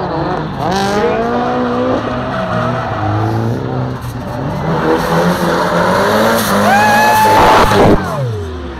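Cars doing spins and burnouts: engines revving hard, rising and falling again and again, with tyres squealing. Near the end a long, steady tyre squeal builds to the loudest part.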